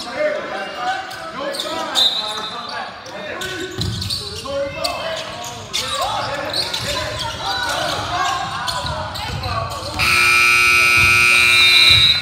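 Players and crowd shouting over a basketball bouncing on the gym floor as a high school game's clock runs out. About ten seconds in, the scoreboard's end-of-game horn sounds, a loud steady blare held for about two seconds.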